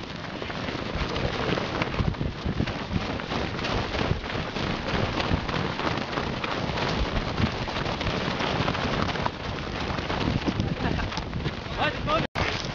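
Dense crunching and rustling of a group of runners running through snow, heard from a camera carried by one of them, with wind and handling noise on the microphone. Voices join in near the end.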